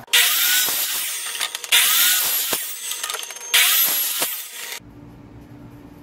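Electric miter saw cutting through 1½-inch PVC pipe, three cuts one after another, each starting abruptly with the motor's whine. The sawing stops about five seconds in.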